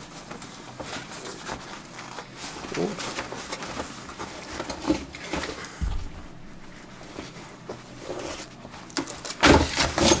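Handling noise from a Toyota Camry front seat being taken apart: its fabric cover, foam cushion and steel frame rustling, scraping and clattering as the cover is pulled off. There is a dull thump about six seconds in, and the loudest knocks and scrapes come near the end.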